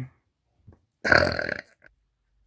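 A man's single loud burp, about a second in, lasting around half a second.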